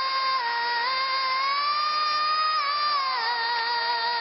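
A young girl singing, holding one long high note that swells slightly upward in the middle and drops away near the end.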